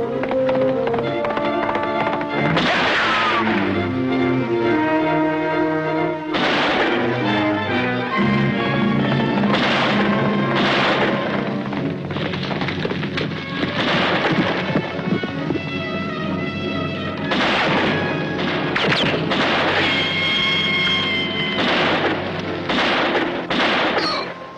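Orchestral film score playing, with about a dozen sharp cracks of gunfire at irregular intervals.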